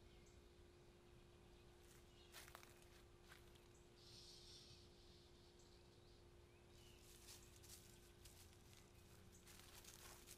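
Near silence: faint outdoor room tone with a steady low hum, a few faint clicks, and faint crackling of dry leaves underfoot toward the end.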